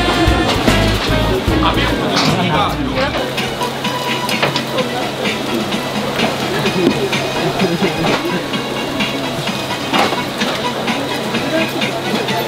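Background music with a bass line for the first three seconds or so, then busy street-market ambience: many people chattering, scattered sharp clicks and clinks, over a steady low hum.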